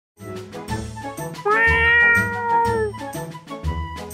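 Channel intro jingle with a repeating bass beat, and a cartoon cat's meow about one and a half seconds in, one long call that drops in pitch at its end.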